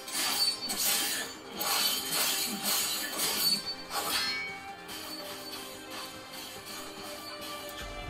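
Fight soundtrack of an animated sword duel: music under a quick run of ringing metal blade clashes in the first half, then the music goes on alone and quieter.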